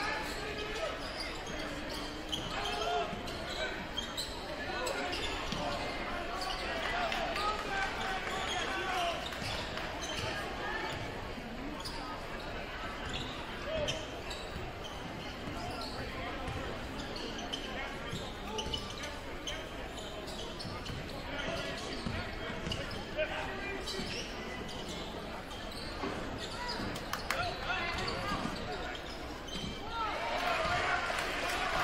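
Gym game sounds: a crowd talking and calling out in a large, echoing hall, with a basketball being dribbled on the hardwood court and short knocks throughout.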